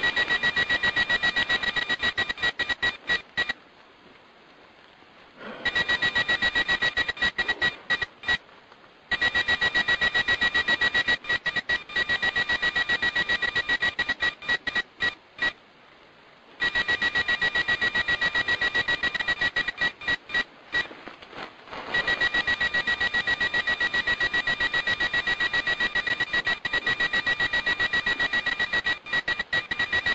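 Electromagnetic field detectors beeping in rapid trains of high-pitched beeps. The trains stop for a second or two several times, then start again. The beeping is presented as a recording of packets of information being communicated, which the speaker takes for transmissions from extraterrestrial intelligence.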